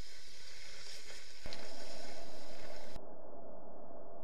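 Steady rushing of turbulent river water below a weir, a noisy hiss. It turns louder about one and a half seconds in, then about a second and a half later it abruptly turns dull and muffled.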